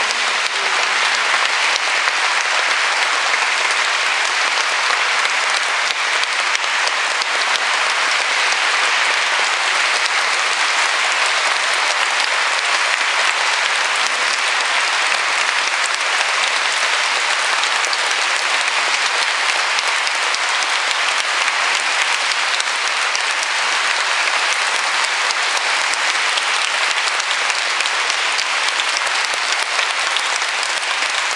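Audience applauding, a dense and even clapping that holds steady without rising or fading.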